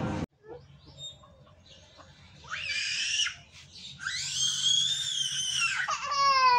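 A young child shrieking in two long, high-pitched squeals. The first comes about two and a half seconds in. The second, about four seconds in, is longer and louder, rising and then falling in pitch.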